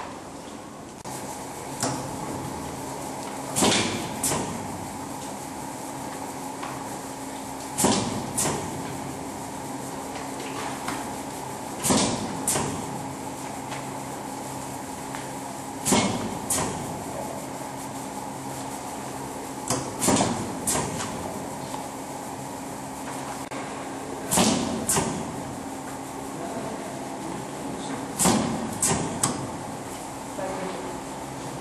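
Semi-automatic laminating machine running with a steady hum, broken by a pair of sharp mechanical clacks about every four seconds as it cycles.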